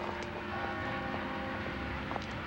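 A train running, with a steady low rumble, a hum of several held tones and a few faint clicks.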